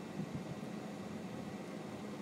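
Steady low hum with an even hiss: the background noise inside a car's cabin with the engine running, with a faint knock about a third of a second in.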